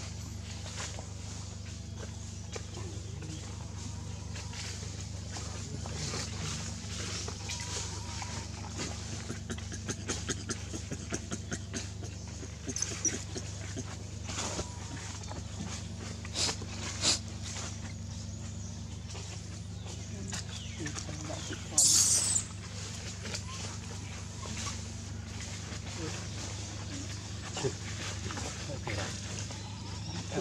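Outdoor ambience around a group of macaques: faint background voices and a steady low hum, with scattered small clicks and rustles. One short, loud, hissy burst comes about 22 seconds in.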